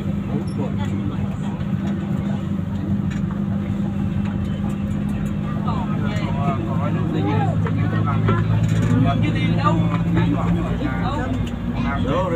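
Steady low engine and road drone inside a moving vehicle's cabin, its note changing about halfway through. Indistinct voices talk in the background in the second half.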